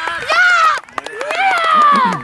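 Children's voices shouting on a football pitch: two long, high-pitched yells with a short break about a second in.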